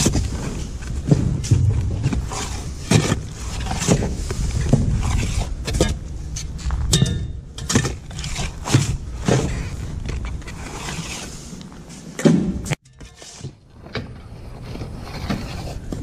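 A long-handled digging tool scraping and knocking through sand in a tunnel dug under a concrete sidewalk, with irregular scrapes and thumps throughout and a brief drop-out about three-quarters of the way in.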